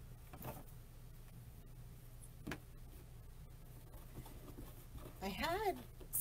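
Quiet room with a steady low hum and a few faint soft rustles and taps as deco mesh is handled on a work table; a woman starts speaking about five seconds in.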